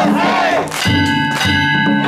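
Danjiri festival music: a taiko drum and metal kane gongs struck repeatedly, the gongs ringing on between strokes, with a crowd shouting along.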